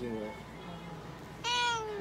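A tabby cat meows once, about one and a half seconds in: one loud, high call that falls a little in pitch.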